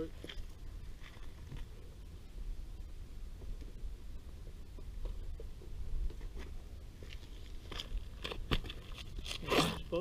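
Scattered clicks and crunching handling noises from someone working with a flathead screwdriver close to the microphone, growing busier in the last two seconds, over a steady low rumble.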